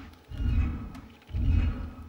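The received radio signal played as sound over speakers: a low, rhythmic throbbing, about one pulse a second.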